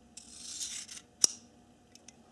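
Dalton Cupid out-the-front knife being closed: a scraping rasp as the thumb slider is drawn along the metal handle, then one sharp metallic click as the blade retracts into the handle.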